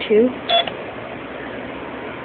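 A single short electronic beep from a lottery ticket terminal as its '2' key is pressed, about half a second in.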